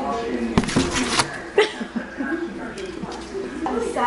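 Talking in the room, with a few quick knocks and bumps on cardboard in the first two seconds, like a cat moving about inside a closed cardboard carton.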